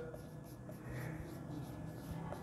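Faint marker pen writing on a whiteboard, the tip rubbing across the board in a run of short strokes.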